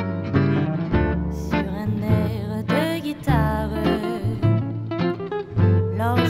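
Gypsy swing (jazz manouche) band playing: plucked guitar lines over sustained bass notes, with a few sliding melodic phrases.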